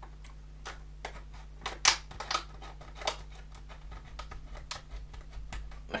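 Scissors cutting through the hard clear plastic of a sealed blister pack: an irregular series of sharp snips and cracks of the plastic, the loudest about two seconds in.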